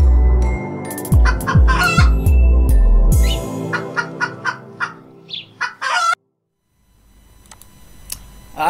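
Logo intro jingle: electronic music with deep bass hits that fall in pitch, about two a second, over layered sustained tones. After about three and a half seconds the bass drops out, leaving a run of short sharp clicks and chirps. The jingle cuts off suddenly about six seconds in, and a faint hiss follows.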